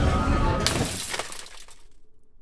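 Busy street-stall noise, then about half a second in a sudden glass-shattering sound effect that fades away over the next second.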